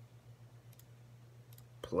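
A few faint clicks of keys being pressed while figures are entered into a calculator, over a low steady hum.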